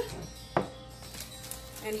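A single sharp knock on a glass mixing bowl, followed by a short ring that fades within about a second.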